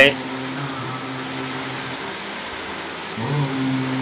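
A steady low hum of room noise fills a pause in a man's talk. A short voiced sound from him comes in near the end.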